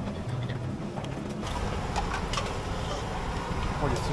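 Street traffic noise: a steady low rumble of passing vehicles, with a few faint clicks.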